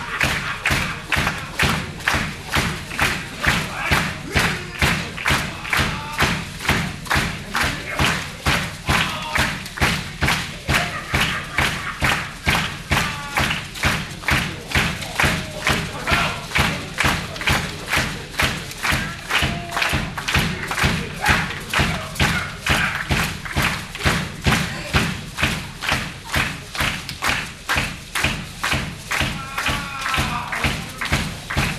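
A Pearl drum kit played live in a steady, even beat of about three strokes a second, with a heavy thud in every stroke.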